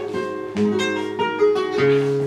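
Solo flamenco guitar on a nylon-string Spanish guitar, playing plucked melody notes and chords, a new note or chord struck every third to half second and left ringing.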